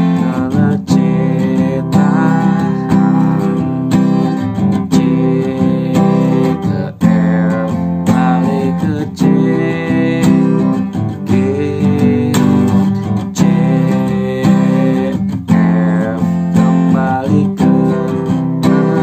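Acoustic guitar strummed in a steady down-up rhythm, playing basic open chords in the key of C.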